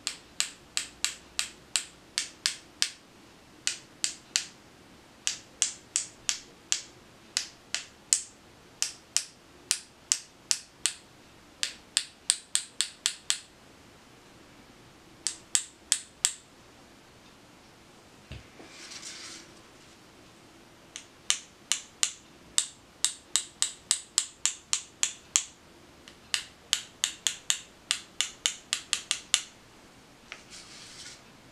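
A paintbrush tapped sharply against a second brush held across it, about three taps a second in runs with short pauses. Each tap flicks speckles of black watercolour paint onto the paper, a splatter effect.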